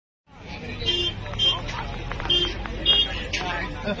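Roadside hubbub: several people talking and calling out over a steady low rumble of vehicle traffic, with four short high-pitched tones in the first three seconds.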